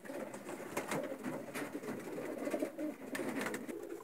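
Racing pigeons cooing in a loft, a continuous low, wavering cooing with a few faint clicks.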